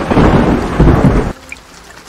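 Loud thunderclap with rain, cutting off suddenly a little over a second in, leaving faint rain.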